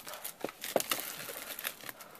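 Thin plastic shrink-wrap crinkling as it is peeled off a cardboard box: a run of small, irregular crackles.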